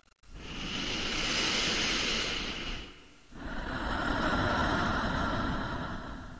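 Two long swells of rushing, whooshing noise. Each builds up and fades away over about three seconds, the second beginning about three seconds in.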